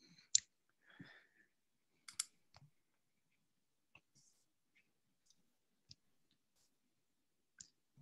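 A few faint, scattered clicks in a quiet room. The sharpest comes about a third of a second in, with smaller ones spread through the rest.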